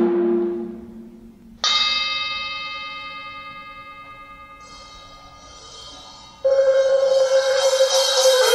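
Struck metal percussion, bell-like, ringing out and fading slowly; a second stroke comes about one and a half seconds in. About six and a half seconds in, a steady sustained chord-like tone comes in and holds.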